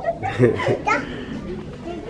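A toddler babbling in short broken bits of voice, mostly in the first second, then quieter.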